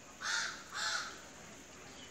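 A bird calling twice in the background, two short calls about half a second apart.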